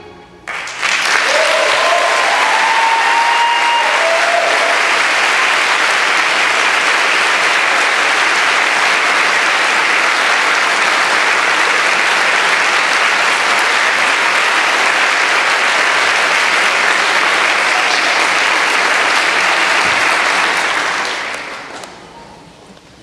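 Audience applauding in a large crowd: the clapping breaks out suddenly, holds steady for about twenty seconds and dies away near the end. A few voices cheer above it in the first few seconds.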